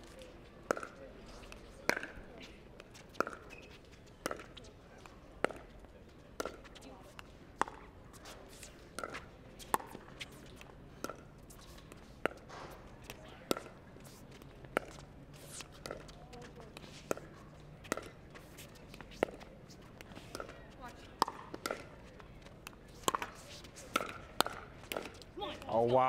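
Pickleball rally: a long run of sharp pops, about one a second, as the hollow plastic ball is struck back and forth by paddles.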